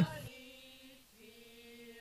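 Faint choir of women's voices singing long held notes, with a short break about a second in.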